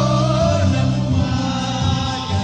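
Oromo song: a singing voice carrying a wavering melody over steady held bass notes.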